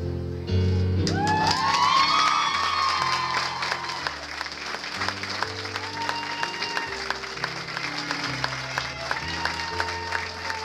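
Audience applauding and cheering over music, the clapping and high-pitched whoops starting about half a second in and carrying on through the rest.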